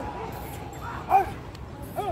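A dog barking a few short barks, the loudest about a second in and another near the end.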